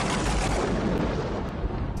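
Thunder from a storm: a loud, deep, steady rumble that eases slightly toward the end.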